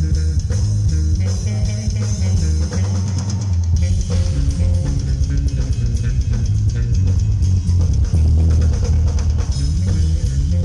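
Electric bass guitar and drum kit playing live together in a bass-and-drums feature, with heavy, stepping bass notes over a steady beat.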